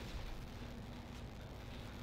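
Quiet pause: faint steady room tone with a low hum, and no distinct sound event.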